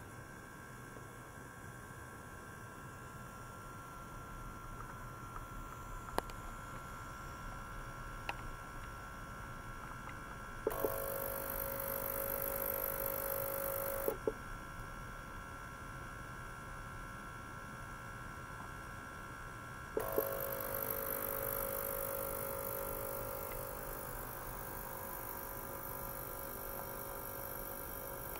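Ultrasonic cleaner bath setup giving a steady electrical hum of several high tones. Twice the cleaner comes on with a click and a loud hiss and buzz from the water bath. The first run lasts about three seconds and ends with a click. The second starts about twenty seconds in and fades slowly.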